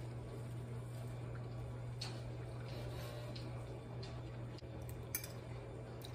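Soft rustles and light clicks of kale and shredded cheese being handled on a plate, with one sharp click of the plate or cutlery about five seconds in, over a steady low hum.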